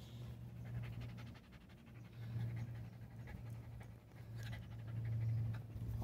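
A dog panting rapidly and steadily, in short quick breaths.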